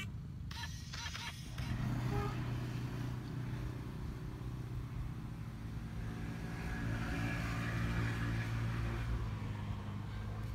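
A motor engine running steadily, heard as a low hum that sets in about a second and a half in and swells a little toward the end.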